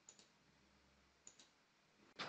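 Faint computer mouse clicks: two quick double clicks, one at the start and one just past halfway, over near silence.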